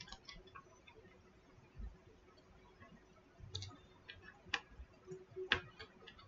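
Sparse light clicks and taps of small objects being handled, a few seconds apart, with the sharpest click about five and a half seconds in.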